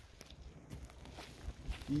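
A few quiet footsteps on a forest floor of dry needles, twigs and moss.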